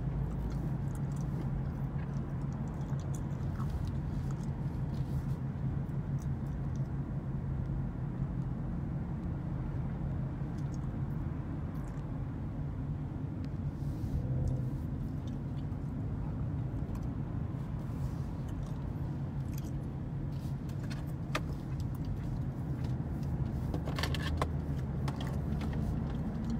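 Steady low engine and road hum inside a car's cabin while driving, with a few faint clicks near the end.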